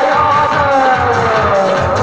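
Live Meenawati folk music (Meena geet): a held melody line falling slowly in pitch over a steady drum beat.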